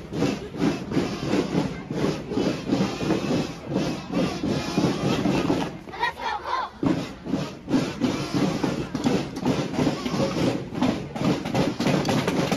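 A children's marching drum line playing snare drums with sticks in a steady, quick cadence of even strokes.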